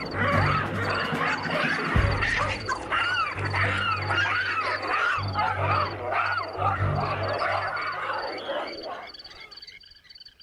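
A troop of baboons screaming, many overlapping rising-and-falling calls, over background music. The calls fade out near the end.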